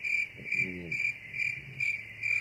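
A high, even chirp repeating steadily about twice a second, with a brief faint voice in the middle.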